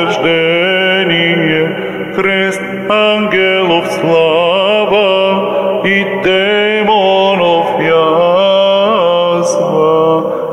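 Orthodox liturgical chant: a solo voice sings a long wordless melisma, the melody winding up and down over a steady, held low drone, with brief breaks between phrases about two and six seconds in.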